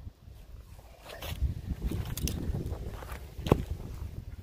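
Rustling and scuffing as a person moves about and handles a young corn plant with a gloved hand, with a few short sharp clicks. A low rumble of wind on the microphone runs underneath.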